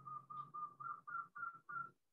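Faint whistle-like tone repeated in short pulses, about four a second, stepping slightly higher in pitch in the second half.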